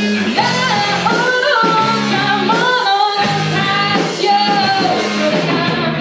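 A rock band playing live: a singer over electric guitar, bass and drums, with a brief break in the bass and drums about three seconds in.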